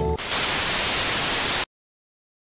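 Background music stops, then a steady hiss of static noise runs for about a second and a half and cuts off suddenly into silence.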